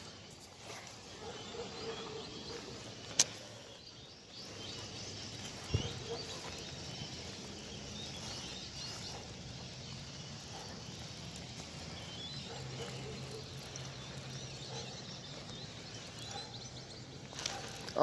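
Faint outdoor ambience with small birds chirping. There are three sharp clicks in the first six seconds and a low steady hum through the middle.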